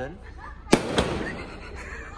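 Two sharp firecracker bangs about a quarter of a second apart, each with a short echo.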